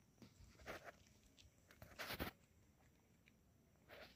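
Near silence: faint background hush with a few brief soft clicks, the loudest about two seconds in.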